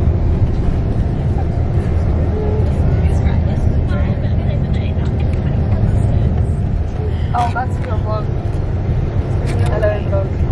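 Steady low rumble of a bus under way, heard from inside the cabin, with voices calling out briefly over it, most clearly about seven seconds in and again near the end.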